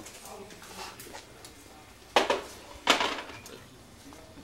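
Metal serving utensils knocking against plates and the serving dish as pasta is served from a cheese wheel: two sharp, loud knocks a little over two and about three seconds in.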